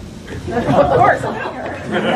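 Overlapping, indistinct voices: chatter in a large hall, louder from about half a second in.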